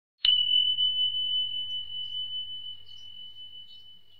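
A bell ding struck once, one clear high tone that rings on and fades slowly over several seconds.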